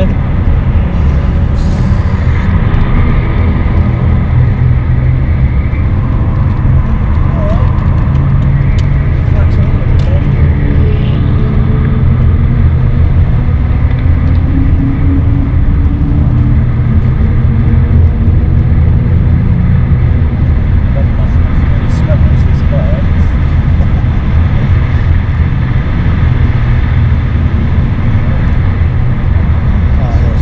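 BMW 530d's straight-six turbodiesel heard from inside the cabin while driven hard, a steady low drone with road and tyre noise, its pitch climbing and falling with the revs.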